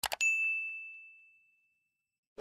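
Two quick clicks, then a single bright bell ding that rings out and fades over about a second and a half: the notification-bell sound effect of a subscribe-button animation.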